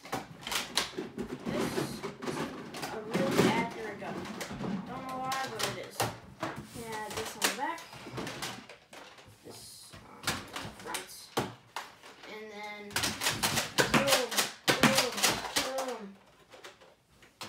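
A boy's low, unclear talk with the plastic clicks and rattles of a Nerf Elite Delta Trooper blaster being handled. A quick run of clicks comes about thirteen seconds in and is the loudest part.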